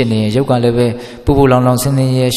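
A Buddhist monk's voice chanting in long, held notes on a steady low pitch, with a short break about a second in.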